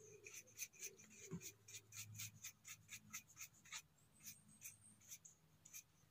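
Faint, quick scratchy strokes of a bristle brush cleaning dirt off a freshly picked bolete mushroom, about four strokes a second, with a short pause near the middle before they go on more sparsely.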